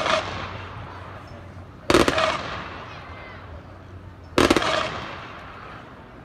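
Three volleys of rifle fire about two and a half seconds apart, each a ragged cluster of near-simultaneous shots followed by a long fading echo: a three-volley salute.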